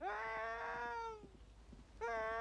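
An animal bleating: one long bleat that starts with a short upward slide, holds steady and fades about a second and a half in, then a second bleat begins at the very end. Faint knocks sound underneath.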